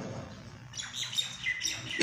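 Birds chirping: a few short, high chirps that start a little under a second in.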